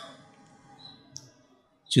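A brief pause in a man's speech at a close microphone, with one short, faint click a little over a second in; speaking resumes near the end.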